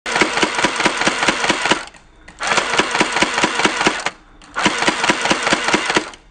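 Electric toy M416 gel blaster firing gel beads on full auto: three bursts of fast, even rattling from its motor-driven gearbox, each under two seconds, with short pauses between.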